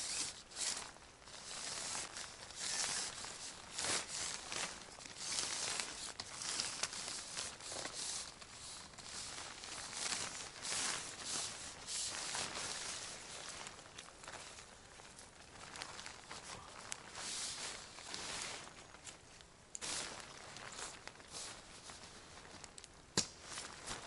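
Tent fabric of a small Splav one-man tent rustling and crinkling in irregular bursts as it is spread out and pitched, with scuffing steps on the forest floor and occasional light clicks and knocks.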